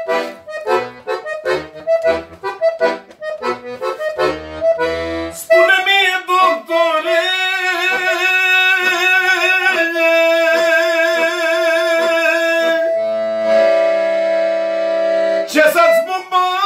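Hohner piano accordion playing solo in a Romanian manele/lăutărească style. Short detached chords over low bass notes open the passage, then a sustained, ornamented melody follows and ends on a long held chord near the end.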